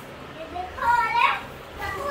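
A young child's high voice calling out in play without clear words, one drawn-out call of about a second in the middle.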